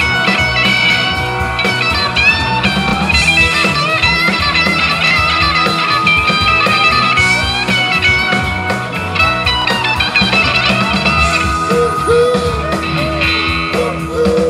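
Live blues-rock band playing: electric guitar lines with bent notes over Hammond organ and a steady drum beat.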